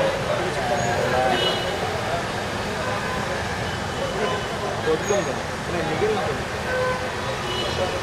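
Indistinct voices over steady traffic noise in the open air, with a few short high tones.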